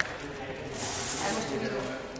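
Indistinct voices of people talking in the background, with a brief hissing noise about a second in.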